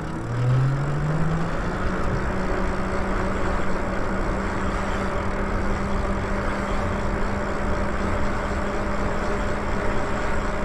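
Lyric Graffiti fat-tyre e-bike on the move: a whine that rises in pitch over the first second or so as the bike gathers speed, then holds steady at cruising speed. Under it runs a steady rush of wind and tyre noise on the road.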